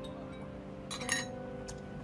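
A few light metallic clinks about a second in and one more shortly after, as metal dental hand instruments knock against each other or the mannequin. Under them a steady low held tone slowly fades.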